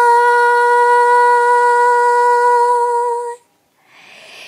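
A woman singing unaccompanied, holding one long steady note for about three and a half seconds before it stops.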